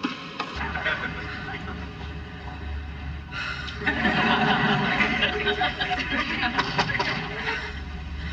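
Sitcom soundtrack played through a television's speaker: studio audience laughter, then a short music cue when the scene changes about four seconds in, over a steady low hum.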